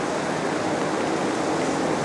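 A steady, even hiss of background noise, with no distinct events.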